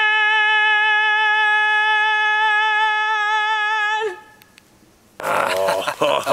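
A man singing, holding one long, steady note that breaks off about four seconds in. After a short quiet gap, a louder voice with pitch sliding downward starts about five seconds in.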